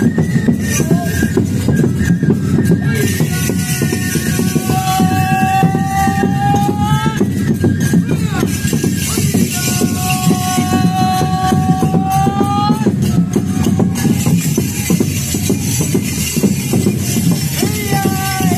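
Enburi festival hayashi music: drums keeping a steady, dense beat, with a long held note that rises slightly at its end sounding over it twice, once a few seconds in and again about ten seconds in.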